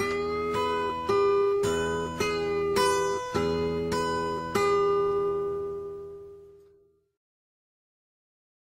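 Fingerpicked acoustic guitar playing a blues lick in E: about nine plucked notes, about two a second, alternating between the 7th and 8th frets on the G and B strings over the open low-E bass. The last note rings out and fades away about two seconds before the end.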